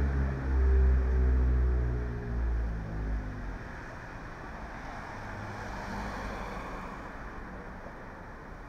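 A motor vehicle's engine close by, its low note falling slowly in pitch and fading away over the first three seconds or so, leaving a steady background rush.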